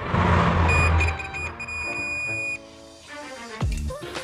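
Digital multimeter's continuity beeper sounding as the test probes touch a SIM-tray pin and a board pad: a high steady beep that stutters at first, then holds for about a second, showing the two points are connected. Background music runs underneath.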